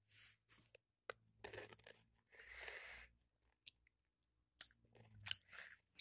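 Chewing a crunchy goldfish-shaped cracker: faint, scattered crunches, with a longer stretch of crunching about two and a half seconds in.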